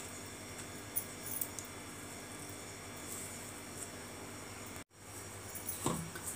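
Faint, occasional light taps of a knife on a plastic cutting board as seeds are picked out of watermelon pieces, over a steady low hum. The sound cuts out for a moment near five seconds, and a short knock comes just before the end.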